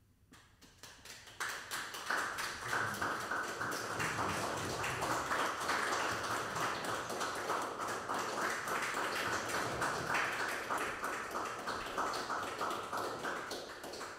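Small audience clapping at the end of a piano sonata movement. It builds over the first second or two, holds steady, and dies away near the end.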